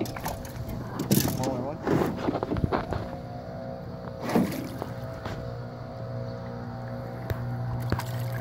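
Steady low hum of a boat motor with short voice-like exclamations about a second or two in. Near the end a hooked fish thrashes at the surface with a sharp splash as it is reeled to the boat.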